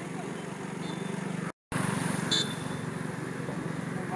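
A vehicle engine idling with a steady low hum. The sound drops out completely for a moment about one and a half seconds in, and a brief high chirp comes just after.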